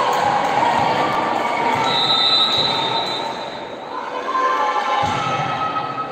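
Echoing sports-hall noise during a youth volleyball match: the hum of voices around the court, a high tone held for over a second about two seconds in, and a thump from play near the end.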